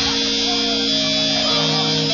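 Distorted electric guitars from a live rock band, played through Marshall amplifiers, ringing out held notes over a steady buzz. The drum hits stop just as it begins.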